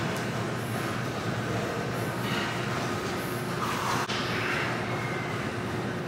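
Steady rumbling background noise of a gym, with a brief click about four seconds in.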